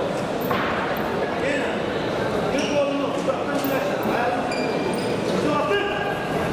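Steady babble of many indistinct voices echoing in a large sports hall, with a few scattered thumps.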